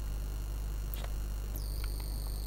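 Steady low electrical hum in a lull between narration, with a few faint clicks; about one and a half seconds in, a steady high-pitched whine switches on and holds.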